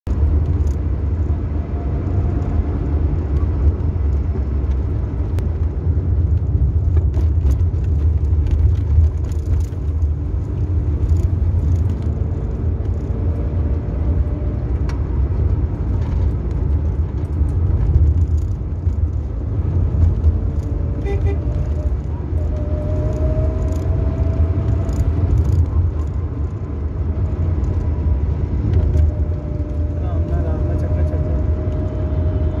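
Steady low rumble of a car's engine and tyres heard from inside the cabin while driving, with faint drifting pitched tones and scattered light clicks.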